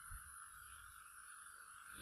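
Near silence: a faint steady hiss, with no speech.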